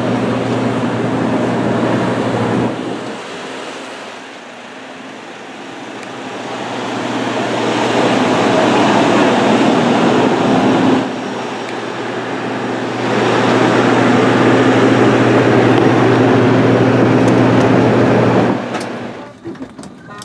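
Steady machinery noise of a busy airport apron beside parked jet airliners, a low droning hum with a few steady tones. It drops away about three seconds in, swells back, dips briefly after eleven seconds, and cuts off near the end.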